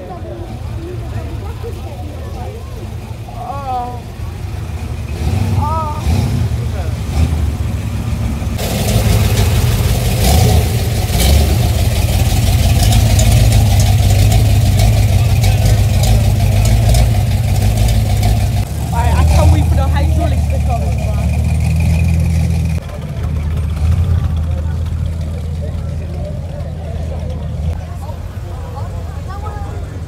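Engines of American show cars running at low speed as they drive slowly past one after another. A deep, loud engine rumble with exhaust noise builds about nine seconds in and holds through the middle, as a lowered red pickup on Mickey Thompson drag tyres goes by, then eases off.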